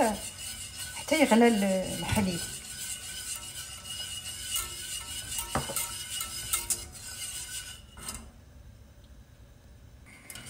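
Wire whisk stirring a milk mixture in a stainless steel saucepan, scraping and tapping against the pan, with a sharp tap about five and a half seconds in; the stirring stops about eight seconds in.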